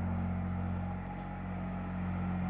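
A steady low hum with no clear pitch change.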